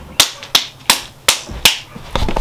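Five sharp hand claps, evenly spaced about a third of a second apart.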